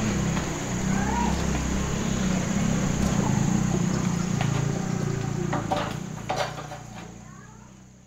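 Rural outdoor ambience: a steady high-pitched insect drone, a few short bird chirps and a low murmur, with a couple of sharp knocks about six seconds in. It all fades out near the end.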